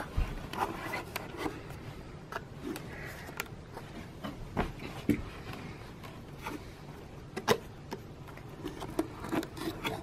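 Small wooden knocks, clicks and rubbing as a child's hands handle the wooden dollhouse's little hinged windows, scattered irregularly throughout.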